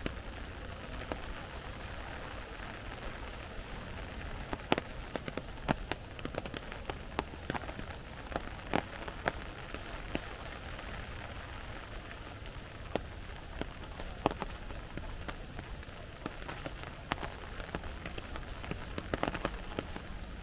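Steady rain pattering on forest leaves, with sharp louder drops landing at irregular moments.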